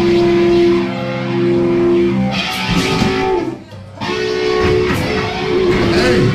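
Amplified electric guitar playing long held chords, changing chord about two seconds in, with a short break a little past halfway before the next chord rings.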